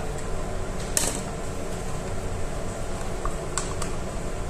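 Steady background hum from a fan, with a sharp plastic crackle about a second in and two short clicks near the end as a plastic yogurt cup is squeezed over the salad bowl.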